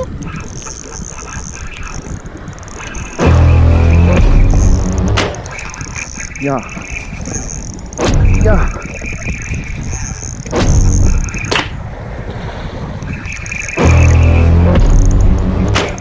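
Gusts of wind buffeting the microphone in loud surges every few seconds, with a man's short shout about six seconds in, over background music.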